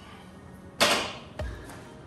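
A loaded barbell with black bumper plates set down on a matted gym floor: a loud, sudden impact about a second in that dies away over half a second, then a shorter dull thud as the bar settles.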